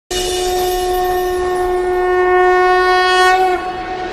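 A conch shell (shankha) blown in one long, steady note that starts at once, holds for about three and a half seconds, then dips slightly in pitch and fades near the end, as is traditionally sounded to open a devotional class.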